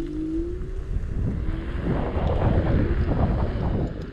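Electric scooter riding fast: its motor gives a rising whine in the first half, then heavy wind buffeting on the microphone and road rumble build up and are loudest in the second half.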